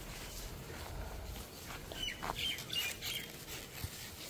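Faint bird chirps: a few short, high calls in the second half, over a quiet outdoor background with a little low rumble at the start.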